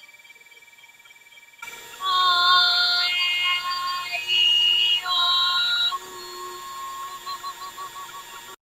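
A singer holding a series of vowels, each sustained for about a second, from an MRI video of singers' vocal tracts played over a webinar's screen share. The singing starts about two seconds in and grows softer, with a wavering tone, near the end.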